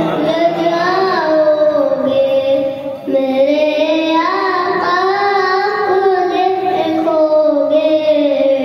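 A boy's voice singing a naat, a devotional Urdu poem in praise of the Prophet, in long held notes that waver and slide in pitch, with a short breath about three seconds in.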